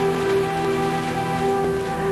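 Soft background music of long held notes over a steady hissing, rushing noise.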